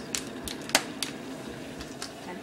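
A few sharp clicks and taps in quick succession, four or five in about a second, over a faint background hum.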